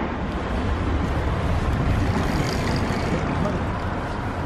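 Steady low rumble of city street traffic noise, even throughout with no distinct events.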